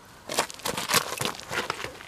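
Loose gravel railroad ballast crunching and clicking as stones are shifted: a quick, uneven run of sharp little knocks starting about a third of a second in.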